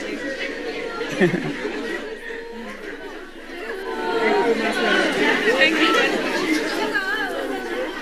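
Chatter of many overlapping voices in a large room. It eases off briefly, then grows louder about halfway through.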